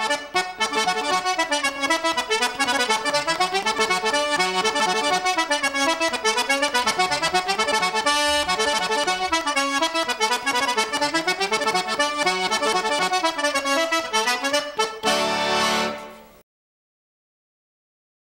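Diatonic button accordion playing a quick, lively tune with a moving bass line. It ends on a held chord about fifteen seconds in, which dies away within a second or two.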